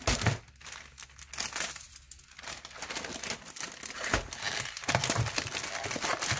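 Black plastic poly mailer bag crinkling and rustling as a cardboard-wrapped VHS tape is pushed into it, with a couple of dull knocks. The crinkling is busier in the second half.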